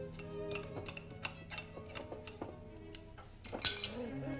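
Quiet background music with small metallic clinks and scrapes of a spoon against a metal tea strainer and china cup, including a sharper cluster of clinks near the end.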